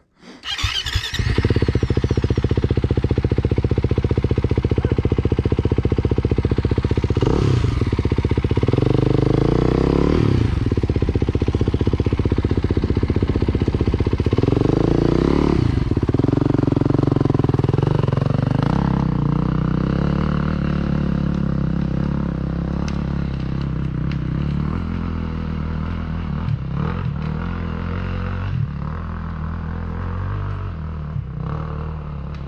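Dirt bike engines idling while the bikes are stopped, with a few short throttle blips that rise and fall in pitch, about a quarter, a third and halfway through. After about two-thirds of the way through the engine note settles lower and a little quieter.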